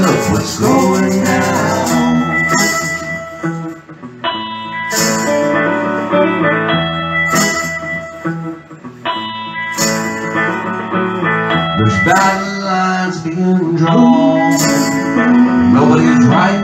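Live music: a hollow-body archtop electric guitar playing, with a woman singing at times and hand percussion shaken in a recurring rhythm.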